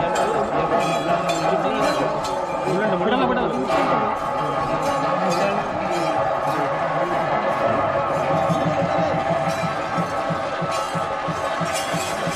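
Festival percussion music: a steady run of drum strokes with ringing metallic tones held over them, mixed with men's voices and crowd chatter.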